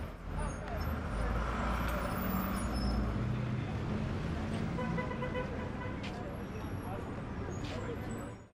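Busy city street ambience: traffic and a crowd's mingled voices, with a horn sounding briefly about five seconds in.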